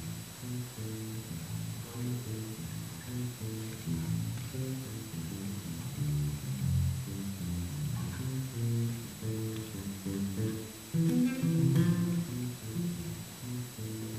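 Electric bass guitar playing jazz solo through an amp: a steady run of plucked notes and double stops, with a louder passage near the end.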